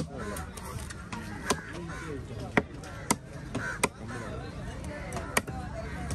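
Heavy cleaver chopping through goliath grouper pieces on a wooden log block, in irregular single strikes about six times, with a babble of voices behind.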